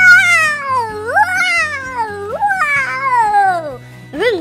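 A man's voice making three long, loud whining calls, each rising briefly and then sliding down in pitch, in a playful cartoon-like way.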